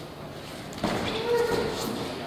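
A judoka is thrown down onto the tatami mat with a thud, a little under a second in, followed at once by loud shouting voices.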